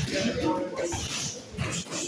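Gloved punches landing on a wall-mounted heavy bag, with short voice-like sounds between the blows.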